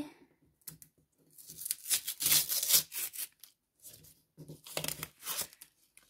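Paper tearing: the sealed paper flap of a handmade paper advent-calendar cell being ripped open by hand, in two spells of short rips with crinkling, and a pause between.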